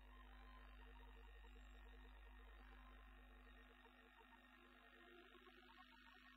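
Near silence: a faint low hum with faint steady tones beneath it.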